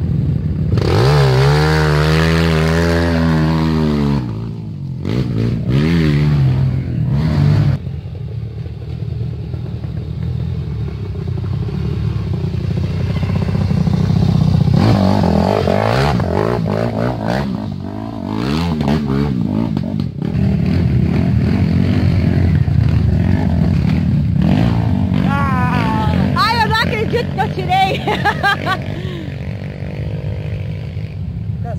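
Dirt bike engines revving hard on a steep muddy climb, the pitch rising and falling in repeated bursts, clearest in the first few seconds.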